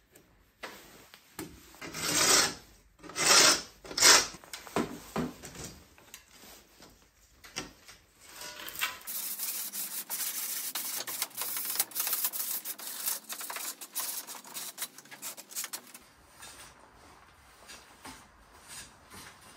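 Steel chisel scraping old glazing putty off a wooden window sash, a few hard strokes about two to four seconds in and lighter ones after. About halfway through, fast, steady rubbing on the wood of a sash frame takes over and stops a couple of seconds before the end.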